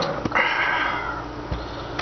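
Handling noise from a button accordion being moved: a click, then a short rush of air that fades over about a second, and a low thump.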